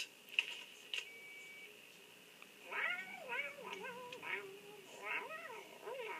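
A cat meowing: a run of rising-and-falling meows from about three seconds in, then more near the end, after two short clicks in the first second.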